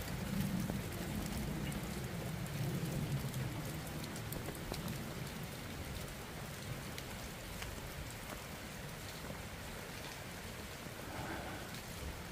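Steady rain falling, with scattered sharp ticks of single drops hitting close by.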